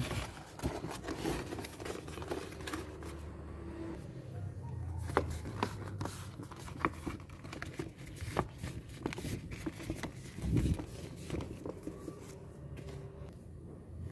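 Calendar paper being folded and handled by hand: rustling and crinkling with many small sharp crackles, and a low thud about ten and a half seconds in.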